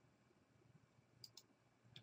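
Near silence with two faint computer mouse clicks in quick succession about a second and a quarter in.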